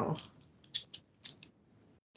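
The tail of a drawn-out spoken 'wow' fading out, then quiet with a few faint short clicks.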